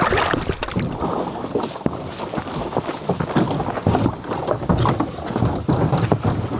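Kayak moving across a lake: irregular water splashes and paddle sounds against the hull, with wind buffeting the microphone.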